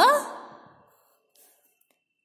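The end of a woman's long, drawn-out spoken syllable, the Hindi letter ṭa (ट), fading out within the first half second. Then near silence with one faint tick.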